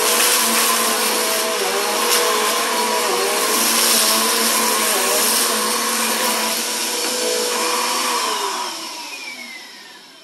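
Bagless upright vacuum cleaner running on carpet, picking up crunchy debris. Its motor whine dips in pitch now and then as it is pushed. About eight and a half seconds in it is switched off and the whine falls away as the motor spins down.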